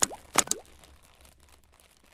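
Logo-animation sound effects: a sharp click, then about half a second later a quick pop that slides upward in pitch, followed by a few faint ticks dying away.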